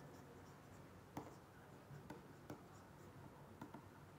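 A pen writing by hand, very faint over near silence: a handful of light taps and scratches at irregular intervals.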